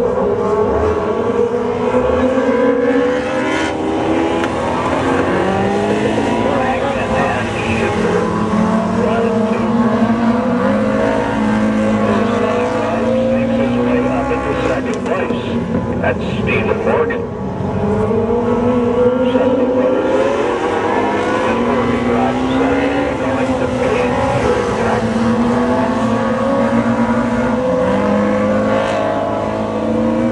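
A pack of dwarf race cars lapping a dirt oval. Several high-revving engines overlap, their pitch repeatedly rising and falling as the cars accelerate and back off.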